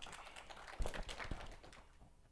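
Scattered, light applause from a small audience, with two dull thumps about a second in from the lapel microphone being handled.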